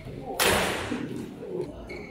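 A badminton racket striking the shuttlecock hard, one sharp smack about half a second in, with a tail of echo dying away after it.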